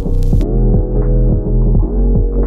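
Background music: a deep, pulsing synth bass on a steady beat, its notes sliding up in pitch about half a second in and again near the end, with a brief cymbal-like hiss at the start.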